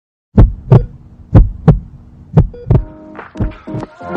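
Heartbeat sound effect: four lub-dub double thumps about a second apart. Music swells in under the last second.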